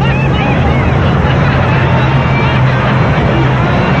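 A vehicle engine running steadily with a low hum, under a constant wash of noise and faint background voices.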